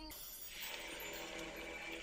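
Animated-series soundtrack playing faintly: a magic-spell sound effect, a hissing shimmer that builds about half a second in over a low steady drone.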